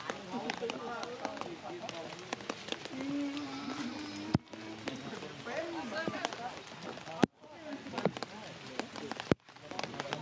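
People talking in the background, with scattered light ticks of rain. The sound breaks off abruptly three times where the clips are cut together.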